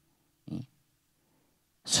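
A single short, sharp breath from a man into a handheld microphone held close to his mouth, about half a second in. Otherwise near silence.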